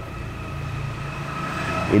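A steady mechanical hum with a faint, even high whine and no sudden sounds.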